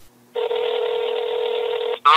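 Telephone ringback tone heard down a phone line as a call is placed: one steady, unbroken tone that starts about a third of a second in and holds at an even level.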